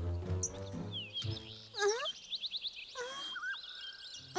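Background music for a children's cartoon, with low sustained notes early on and swooping pitched glides, over high bird chirps.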